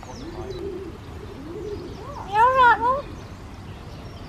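Pied crow making speech-like calls that mimic a human "all right": two faint calls in the first two seconds, then a louder one that rises and falls in pitch past the middle.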